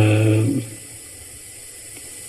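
A man's voice for about half a second at the start, then a steady low hiss of background noise.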